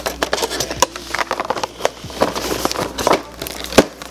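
Cardboard crackling, scraping and clicking as an advent calendar's cardboard door is pushed open and a small boxed product is pulled out. Irregular sharp clicks throughout, with one louder snap near the end.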